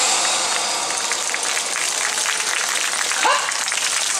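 Audience applauding: steady dense clapping, with one short voice call about three seconds in.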